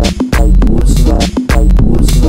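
Loud glitchy electronic music: a heavy, sustained bass line under a fast, chopped beat of sharp drum hits.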